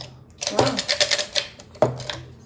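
Makeup brushes and the cosmetic items around them clicking and clattering as they are handled: a quick run of small knocks, then one sharper knock near the end.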